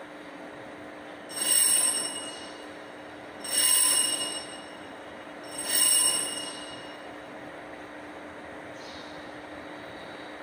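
Altar bells rung three times, about two seconds apart, each ring lasting about a second and dying away. They mark the elevation of the consecrated host at Mass.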